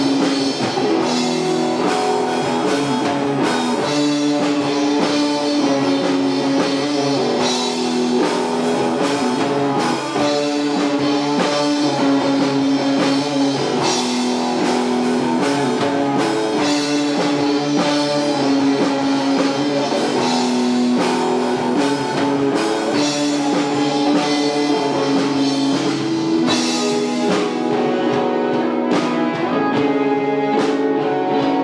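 Live rock band playing: two Stratocaster-style electric guitars over a drum kit, at a steady full level.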